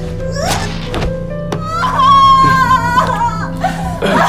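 Tense film score with a steady low drone under a struggle: a woman's cries and several dull thuds in the first two seconds. About two seconds in comes a long, loud, high wail lasting just over a second, the woman screaming.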